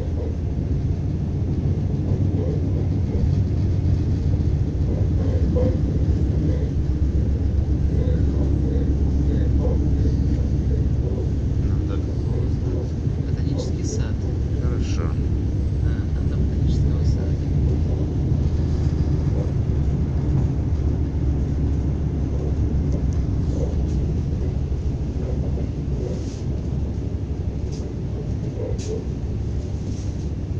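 Running noise inside an ES2G Lastochka electric train in motion: a steady low rumble of wheels on rails, with a few brief high clicks about halfway through and near the end.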